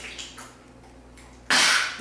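A man drinking from a large plastic Big Gulp mug, faint swallowing and liquid sounds. About one and a half seconds in, a sudden loud breathy sound.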